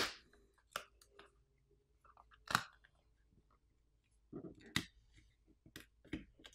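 Glass back plate of a smartphone being pried off its adhesive: a handful of sharp clicks and crackles, the loudest about two and a half seconds in and a quick cluster near the end.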